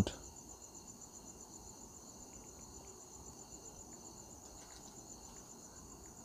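Faint background with a steady, high-pitched, evenly pulsing trill over low hiss.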